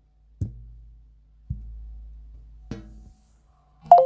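Three light knocks as a phone is handled over an NFC card on a table, then near the end a short two-note electronic tone, higher then lower: the phone's NFC reader detecting the card.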